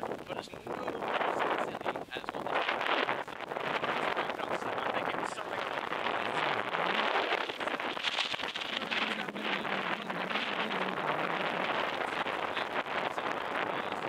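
Wind buffeting the microphone, with people talking under it.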